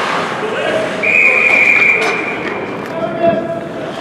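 Ice hockey referee's whistle blown once, a single steady high blast of about a second starting about a second in, stopping play, with voices around it.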